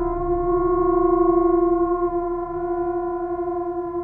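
Ambient orchestral-electronic film score: a drone of several held tones sounding together, one of them shifting slightly in pitch about halfway through, over a low rumble that fades away.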